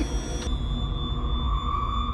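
Eerie film soundtrack: a deep rumble under a steady high ringing tone that comes in about half a second in and holds.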